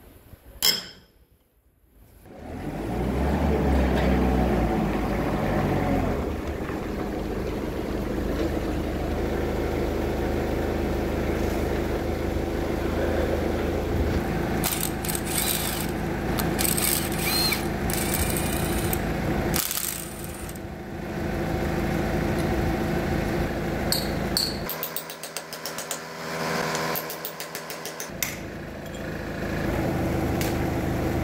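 Cordless impact wrench hammering in short bursts on the mounting bolts of a motor grader's steering cylinder, with a longer fast rattle near the end. An engine runs steadily underneath through most of it.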